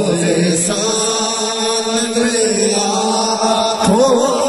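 Men's voices chanting an Urdu devotional naat over a microphone, in long held notes.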